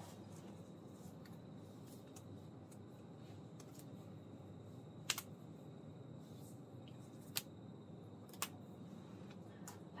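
Quiet room hum with three short, sharp clicks, about halfway in and twice near the end.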